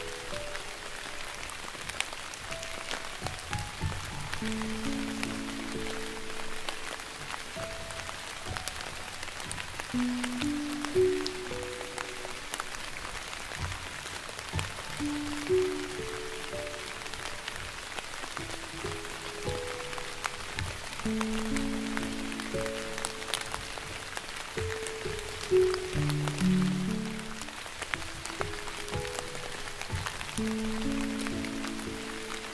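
Slow, soft piano music, single held notes and gentle chords in a low-middle register, over steady light rain with scattered drops ticking.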